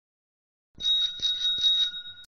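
A bicycle bell rung in a quick trill of strikes, starting about a second in and ringing for about a second and a half as an edited-in sound effect.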